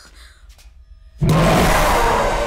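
A sudden loud jump-scare hit in a horror-film soundtrack about a second in: a harsh, noisy crash with a low rumble under it that holds and then slowly dies away.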